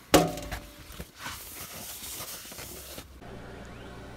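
A sharp knock with a brief ring, then a steady hiss lasting about two and a half seconds: an aerosol cleaner being sprayed onto a surface grinder's magnetic chuck. Near the end a low steady hum takes over.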